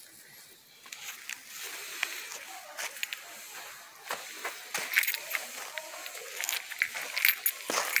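Shoes scuffing and crunching on dry, loose soil as a person steps about, with many small irregular clicks and rustles. A man's voice starts near the end.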